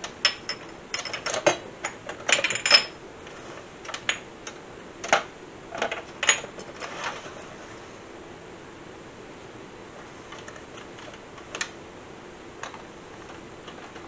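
Spice jars and a turntable spice rack being handled: a run of irregular clicks and knocks as jars are turned, picked up and set back, busiest in the first seven seconds, then a couple of lone clicks near the end.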